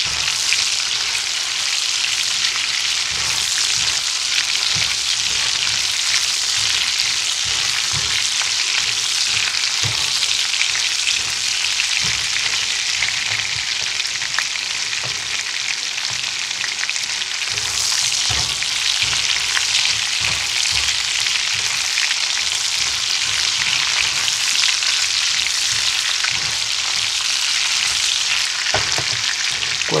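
Chorizo pieces frying in rendered fat in a skillet over medium-high heat: a steady, even sizzle, with a spatula now and then knocking and scraping in the pan as the pieces are stirred.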